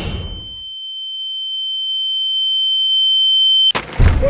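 A single steady high-pitched ringing tone, the film sound effect for ringing ears after a car crash, swelling in loudness for about three and a half seconds. It cuts off abruptly with a sharp hit just before the end.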